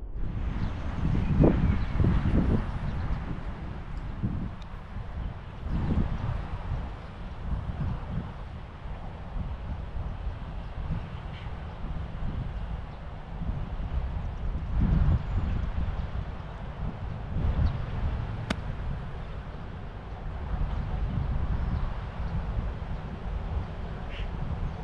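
Wind buffeting the microphone in an uneven low rumble that rises and falls, with a single sharp click of an iron striking a golf ball about three-quarters of the way through.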